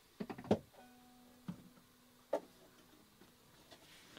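Faint clicks and knocks of a guitar being lifted off its wall hanger and handled, with a string ringing faintly for about two seconds.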